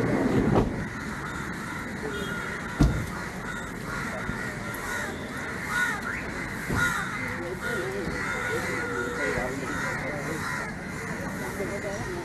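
Crows cawing repeatedly over a background of people talking, with one sharp thump about three seconds in.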